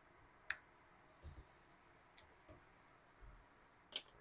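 Wire snippers cutting plastic zip ties: a few short, sharp clicks over near silence, the two loudest about a second and a half apart.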